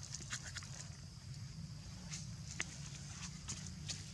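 Faint, scattered small clicks and taps over a steady low hum and a high hiss.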